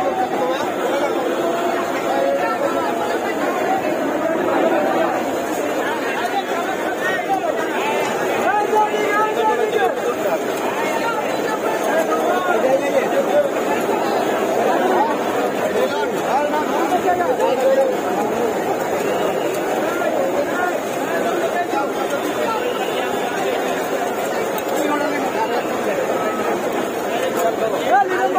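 Busy crowd chatter: many voices talking at once, steady throughout, with no single voice standing out.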